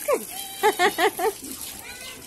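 A woman laughing: four quick, evenly spaced bursts a little over half a second in.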